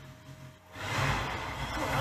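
Sound effects from an anime episode: after a brief near-quiet moment, a noisy low rumble swells up about three-quarters of a second in and holds.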